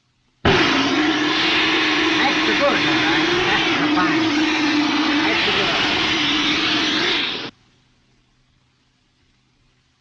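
Handheld blowtorch flame running with a loud, steady hiss and a low wavering tone under it. It starts suddenly and cuts off after about seven seconds.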